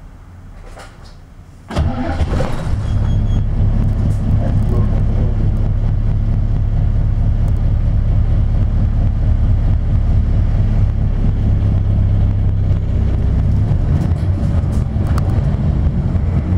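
Diesel engine of a 1999 Isuzu Cubic KC-LV380N city bus, heard from inside the cabin, starting up suddenly about two seconds in after a quiet stop. It then runs with a steady low rumble as the bus moves off.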